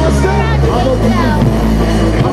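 Live band music over a loud PA with lead vocals on top. Deep sustained bass notes shift pitch partway through.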